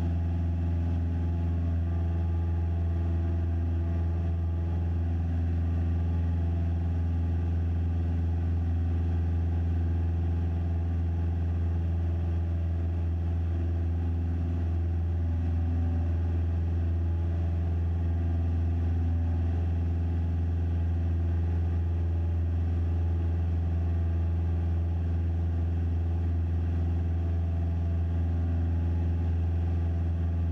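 Cessna 172SP's four-cylinder Lycoming IO-360 engine and propeller at full climb power just after take-off, heard inside the cabin as a steady, unchanging low drone with many overtones.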